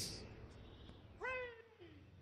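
A single drawn-out voice-like call falling in pitch, about halfway through, over faint background.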